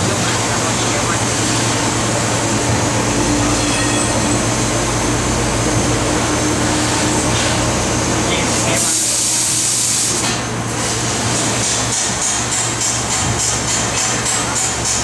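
TRUMPF laser cutting machine cutting sheet metal inside its enclosure: a loud, steady running noise over a low hum. About nine seconds in there is a brief burst of louder hiss, and then the noise thins.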